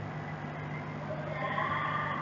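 Steady low electrical hum with background hiss, and faint thin tones appearing about halfway through.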